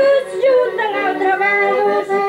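Traditional Portuguese folk song: a singer's voice slides through a held note over about the first half second, over steady instrumental accompaniment that carries on alone.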